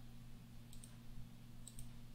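A few faint computer mouse clicks, about a second apart, over a low steady hum.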